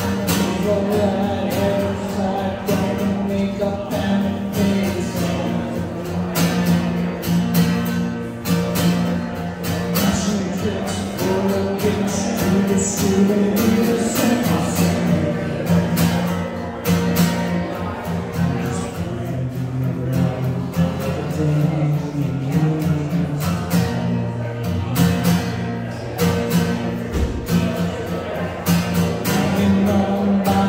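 Strummed acoustic guitar with a man singing, played live.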